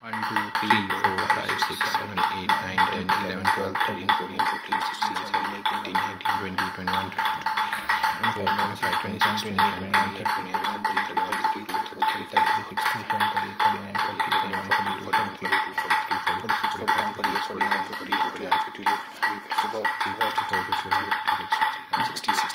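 Table tennis ball bounced continuously on a table tennis racket: a rapid, steady run of light taps.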